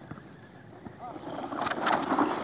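A rough scraping clatter builds up near the end as the HSP Brontosaurus RC truck tumbles on the dirt slope and kicks up dirt, with voices of onlookers mixed in.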